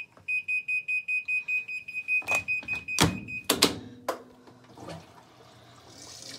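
Sharp top-loading washing machine's control panel beeping as its start button is pressed: one beep, then a quick run of same-pitched beeps about four a second for some three seconds. Several clunks follow, with a faint low hum as the machine starts a spin cycle to drain water still left in the tub.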